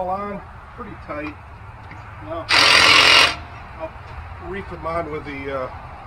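Cordless impact wrench running in one short burst of under a second, rattling as it runs a lug nut onto a pickup truck's wheel.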